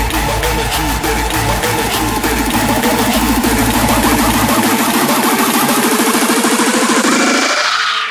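Rawstyle hardstyle dance music mixed on DJ decks. A heavy kick drum beats until about halfway, then drops out for a sustained build-up whose sound narrows and cuts off abruptly just before the end.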